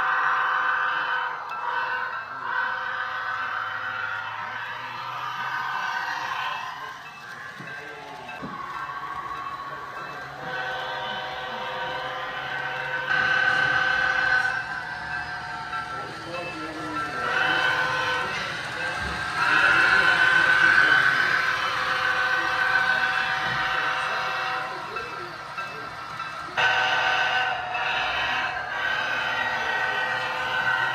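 Model diesel locomotive's onboard sound running on a layout: steady pitched engine-and-horn-like tones that swell louder several times, over the murmur of voices in the room.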